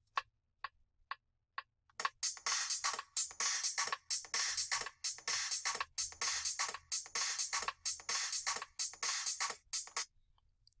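A looped two-bar sampled drum break playing back from MPC software at 128 BPM, in a steady repeating rhythm, preceded by four clicks about half a second apart.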